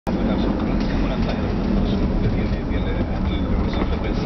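Car cabin noise while driving: a steady engine and road-tyre rumble, with voices from the car radio underneath.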